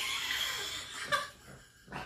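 A man laughing: a breathy, airy laugh that trails off after about a second, with one short last burst of breath just after.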